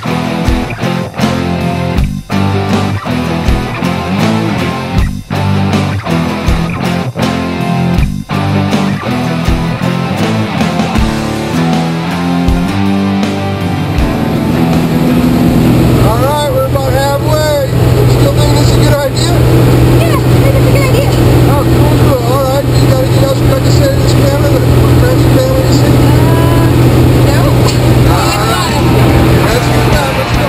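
Rock music with guitar and a steady drum beat. About halfway through, it gives way to the steady drone of a skydiving jump plane's engine heard inside the cabin, with people shouting over it.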